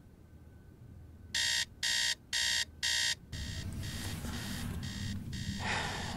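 Digital bedside alarm clock going off: four loud electronic beeps about half a second apart, after which the beeping carries on more faintly.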